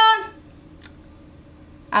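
A voice trailing off on a held, falling note, then quiet room tone with a single faint click about a second in; a voice starts again at the very end.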